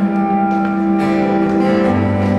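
Live band music: an instrumental passage with no singing, made of steady held notes.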